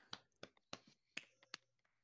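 Near silence broken by four or five faint, sharp clicks spread irregularly over two seconds.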